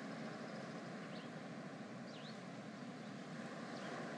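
Faint beach ambience: a steady soft hiss with three faint, short, high bird chirps spread through it.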